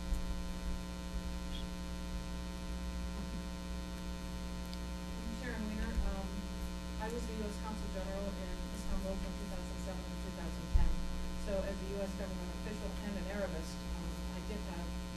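Steady electrical mains hum in the sound system, with faint, distant, untranscribed speech from about five seconds in and a single low thump near the end.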